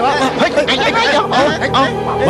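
Several voices chattering and calling out at once, in short overlapping rising-and-falling cries.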